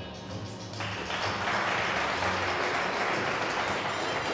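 Skating program music playing over the rink's sound system, with audience applause breaking out about a second in and continuing over it.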